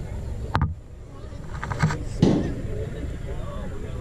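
A few sharp knocks, the loudest about two seconds in, over a steady low rumble.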